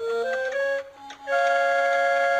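A short electronic musical sting: a few steady notes in the first second, then after a brief dip a held chord of bright tones from about halfway through.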